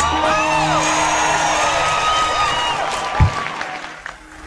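Concert audience cheering, with many rising-and-falling whistles and whoops, over a soft held chord from the band. There is a low thump about three seconds in, and the crowd dies down near the end.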